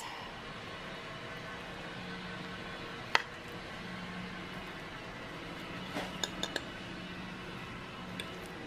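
Metal fork clinking against a ceramic plate as it cuts down through a stack of chaffles: one sharp clink about three seconds in, then a quick run of small clinks around six seconds.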